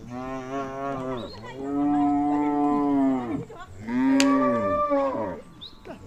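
Cattle mooing: three long calls one after another, each rising and then falling in pitch.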